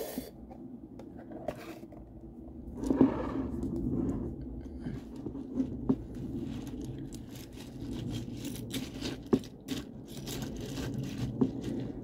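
Metal spoon stirring corn flakes in milk in a bowl, scraping and clinking against the bowl with many small clicks, louder for a moment about three seconds in.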